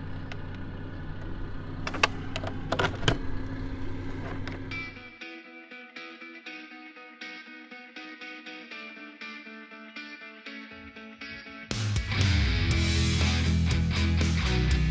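Background music. For about the first five seconds a low, steady rumble with a few clicks runs under it. Then comes a quiet passage of held notes, and near the end a loud guitar-driven rock track kicks in.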